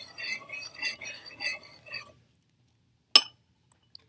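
Metal spoon stirring water in a ceramic bowl, clinking against its sides for about two seconds. A single sharp click follows about three seconds in.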